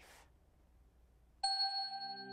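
Quiet room tone, then about one and a half seconds in a bright bell-like chime rings out and keeps ringing over a low held tone: the first note of a logo jingle.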